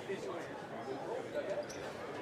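Indistinct chatter in a sports hall, with a few thuds and scuffs of fencers' footwork on the piste.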